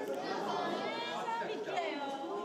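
Several people talking at once, an unbroken chatter of overlapping voices.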